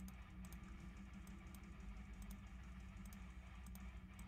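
Faint, irregular light clicks, like keys being tapped, over a steady low hum.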